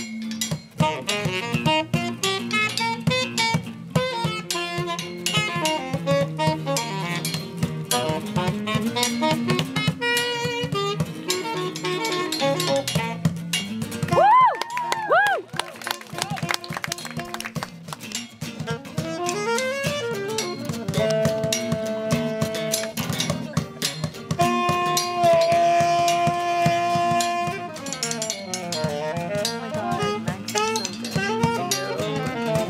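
A small live band playing: guitars strummed under two saxophones. A few pitch slides come about halfway through, and in the second half the saxophones hold long notes.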